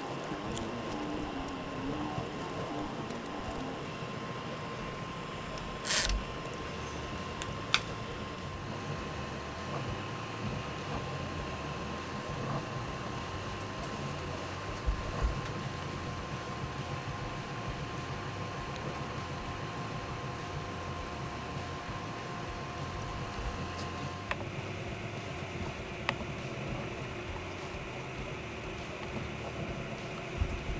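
Steady hum of a 3D printer's small hotend cooling fan running while the hotend is hot, with a faint thin whine. A few sharp clicks and taps from handling the hotend break in, the loudest about six seconds in.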